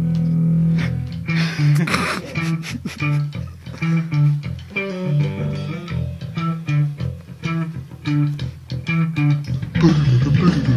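Rock band music on electric guitar and bass guitar: a held low note for about the first second, then a repeating plucked riff of short notes in a steady rhythm.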